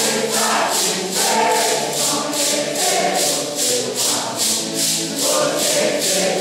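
Mixed choir of men and women singing a Santo Daime hymn in unison, over maracas shaken on a steady beat of about three strokes a second.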